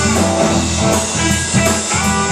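Live blues-rock boogie played instrumentally by electric guitar, electric bass and drum kit, with a steady driving beat.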